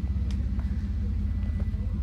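A car engine idling: a steady low rumble with an even pulse.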